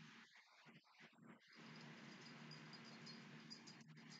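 Near silence: faint room tone with a low steady hum, and a faint high repeated chirping from about halfway in.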